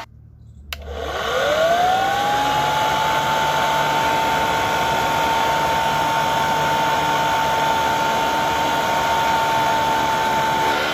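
Homemade centrifugal blower fan switched on about a second in: its motor spins up with a quickly rising whine, then runs steadily with a high whine and a rush of air.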